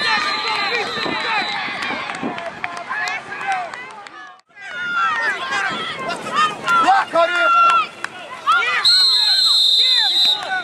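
Spectators and coaches shouting over each other on a football sideline, with a referee's whistle blowing briefly near the end. The sound drops out for a moment a little before the middle.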